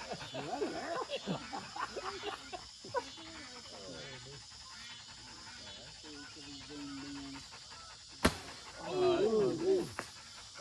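Low men's voices and laughter, then a single sharp crack about eight seconds in from a recurve bow being shot, followed by loud excited exclamations.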